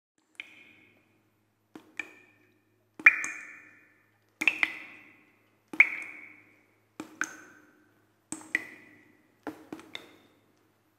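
A dozen sharp struck pings, irregularly spaced and often in quick pairs, each ringing briefly before dying away, after a silent start. The loudest come in the middle.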